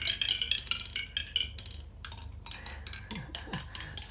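Small balls clicking and clattering down a spiral ball-drop tower toy's coloured petals, a quick run of light clicks that thins out briefly around the middle and then picks up again.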